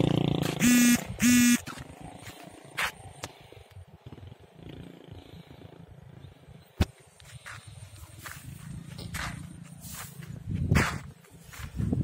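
Two short, steady, high beeps half a second apart near the start. After them come quieter rustling and crunching, with occasional clicks, from footsteps through dry rice stubble and mud.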